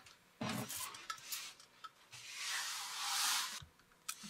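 Cleaning a plastic cutting board with a trigger spray bottle and a paper towel: a few short handling and spraying noises, then a longer hiss of spraying and wiping about two seconds in.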